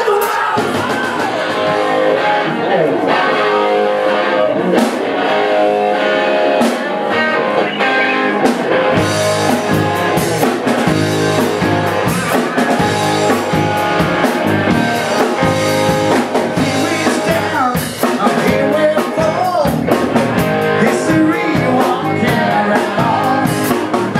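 Live rock band playing: electric guitars, drum kit and singing. The low end fills out about nine seconds in.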